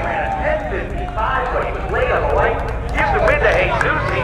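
Men talking near the microphone over a steady low rumble.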